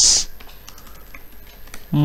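Computer keyboard typing: a quick run of faint keystrokes.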